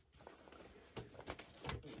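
Faint handling noise of fabric project bags being moved on a shelf: a few soft rustles and light taps, mostly in the second half.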